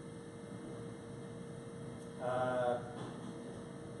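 Steady background hum with a thin steady tone under it, and a man's voice holding a single drawn-out hesitation vowel, "uhh", for about half a second a little past two seconds in.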